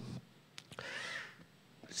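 A single short shout, played back from a sampler gadget just triggered, faint and rising then falling in pitch, with a light click just before it.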